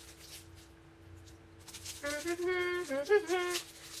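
A girl hums a short wordless tune for about a second and a half, starting about halfway through, while faint crinkling comes from the plastic candy wrapper she is opening. A faint steady hum runs underneath.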